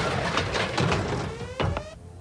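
Film sound effects: dense, rapid crackling and knocking, with a faint rising whine in the second half and a sharp loud hit about one and a half seconds in.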